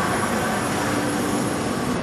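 Automatic through-hole component insertion machine running: a steady mechanical din with a constant low hum and a thin high whine that cuts off at the end.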